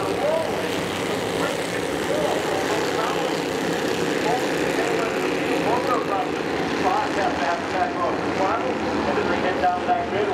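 A pack of Bandolero race cars' small single-cylinder Briggs & Stratton engines running together at racing speed, many overlapping engine notes rising and falling as the cars accelerate and lift through the turns.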